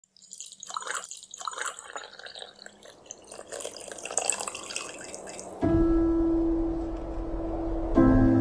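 Liquid poured from a kettle into a mug, trickling and splashing unevenly. About five and a half seconds in, ambient music with deep, steadily held notes starts abruptly and is louder than the pouring.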